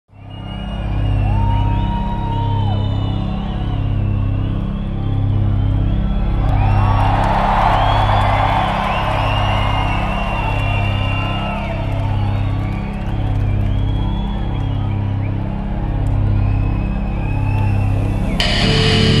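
A slow, pulsing low beat from a heavy metal band's intro track, with whoops and cheering from a concert crowd over it. The cheering swells in the middle.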